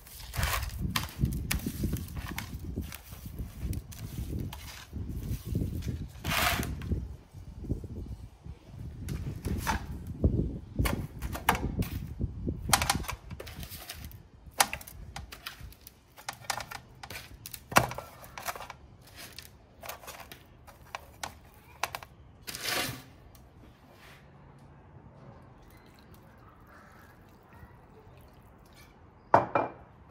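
Hands rubbing salt and pepper into raw lamb shanks on a metal tray: a dense stretch of wet handling noise through the first dozen seconds. After that come scattered knocks and clunks as the shanks are lifted and set down in roasting pans.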